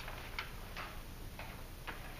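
Faint, irregular scratchy ticks, about four in two seconds, from a pen writing on paper in a quiet room.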